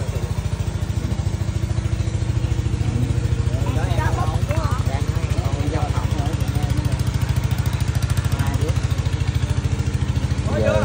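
An engine idling steadily with a fast, even chugging pulse, under faint background voices.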